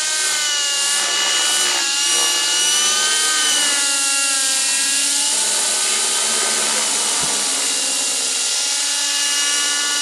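Align T-Rex 600 Nitro RC helicopter in flight, its two-stroke glow engine and rotor running steadily, the pitch sliding up and down as it manoeuvres.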